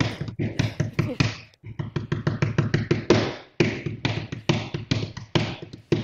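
Hands drumming quick, drum-like rhythms on a tabletop, several taps a second, in three runs with short breaks about one and a half and three and a half seconds in.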